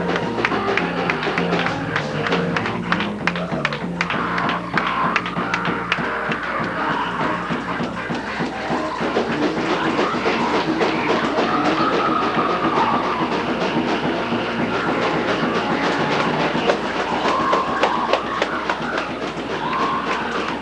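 Up-tempo church praise-break music: fast drums and a stepping bass line, with rapid percussive claps or taps. Wavering raised voices come in over it in the second half.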